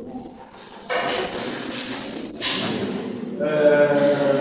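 Speech only: a voice speaking in a classroom, starting about a second in after a brief lull.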